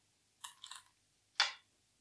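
A black go stone is placed on a wooden go board with one sharp clack about one and a half seconds in, after a couple of faint scuffs.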